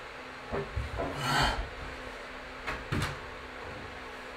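A climber's hands and shoes on the holds of a steep wooden training board: a few dull knocks and scuffs, a short forceful breath about a second in, and two sharper knocks near the end as a hand slaps onto a higher hold.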